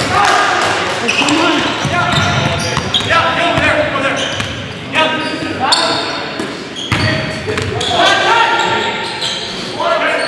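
Basketball game sounds in a large gymnasium: players' voices calling out and echoing, with a basketball bouncing on the hardwood floor.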